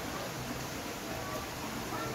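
Faint, indistinct voices chattering in the background over steady ambient noise.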